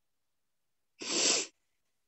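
A tearful woman's single sharp, noisy breath, about half a second long, about a second in.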